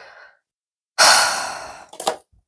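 A woman's heavy sigh: about a second in, a loud breath out that fades away over almost a second.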